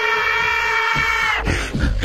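A steady held tone with many overtones, like a horn or wind instrument, cutting off suddenly about one and a half seconds in, followed by short rough noises.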